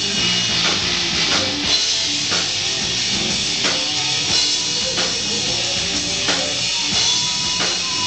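Live rock band playing: drum kit hitting a steady beat of about three strokes every two seconds under electric guitar and bass guitar.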